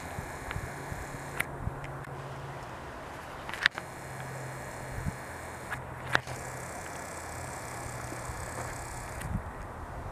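Quiet outdoor background with a steady low hum and a few sharp clicks or knocks, the two loudest about a third and two-thirds of the way through.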